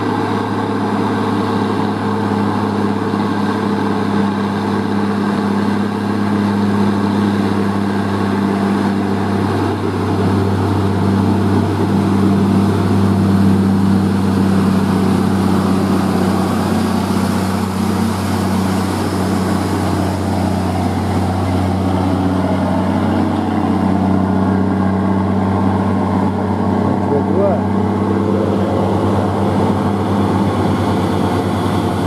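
Diesel engine of a loaded Mitsubishi Fuso three-axle truck pulling slowly uphill: a steady, deep drone that swells a little midway.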